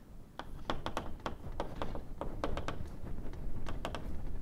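Chalk writing on a blackboard: a string of quick, irregular taps and short scratches as letters are written.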